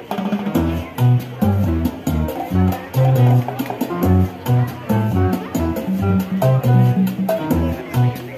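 Recorded backing track of a Latin song with bass, guitar and percussion, starting abruptly and playing its instrumental intro with a steady beat.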